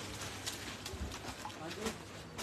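Cloth suits being handled on a counter: a few light taps and clicks with soft rustling as the fabric is pulled and laid down, and a faint voice in the background near the end.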